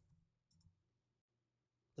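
Near silence: quiet room tone, with one faint click a little over half a second in.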